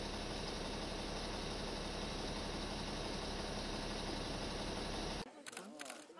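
Steady street noise from road traffic, an even rushing hiss, until it cuts off sharply about five seconds in. After that come several quick camera shutter clicks and faint voices.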